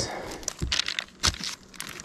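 Dry paper rustling and crackling as an old paper booklet is opened and its stiff pages handled, in a few short crinkles.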